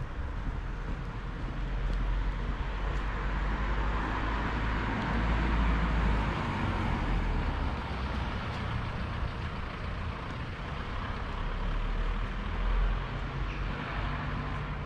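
Road traffic: a vehicle passing, its tyre and engine noise swelling over a few seconds and fading, over a steady low rumble.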